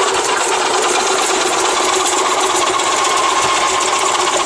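Electric juicer-food processor motor running at full speed with its slicing disc cutting carrots, a loud, steady high-pitched whir with a constant hum.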